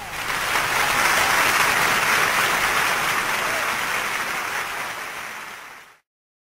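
Applause: dense clapping that comes in at the start, holds steady, then fades out near the end.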